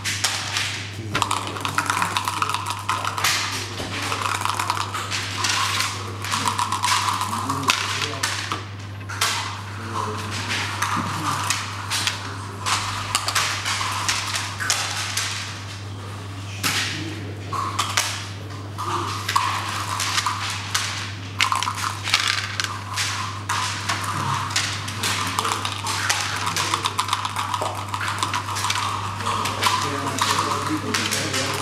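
Checkers clacking as they are slid and set down on a wooden backgammon board, with dice rattling across it, in irregular runs of sharp clicks over a steady low hum.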